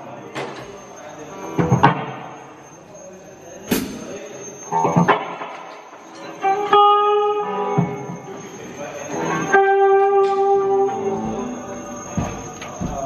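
Electric guitar played through an amplifier: a few sharp strikes in the first seconds, then notes left ringing and sustaining, one in the middle and a louder one at about ten seconds in. A faint steady high whine runs underneath.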